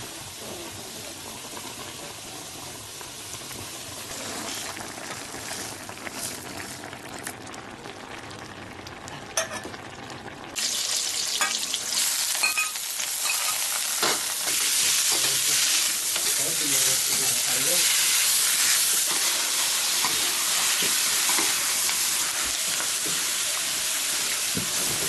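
Home cooking in a wok: quieter simmering with a few clinks at first, then, about ten and a half seconds in, a sudden jump to loud sizzling as food is stir-fried in hot oil. A metal spatula scrapes and clacks against the wok.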